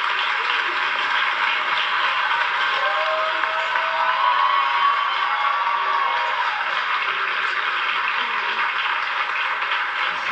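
Studio audience applauding and cheering steadily, with a few voices calling out near the middle, heard through a television's speaker.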